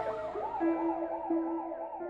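Emergency-vehicle siren in a fast yelp, rising and falling about four times a second. It is loud at the very start, then fainter and lower in pitch, over a steady low tone.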